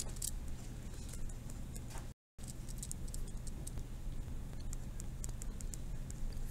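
Pen writing on a notebook page: faint scratching with small ticks over a low steady hum. The sound cuts out completely for a moment about two seconds in.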